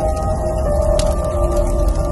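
Background music: long held synth tones that shift slightly in pitch over a deep bass drone.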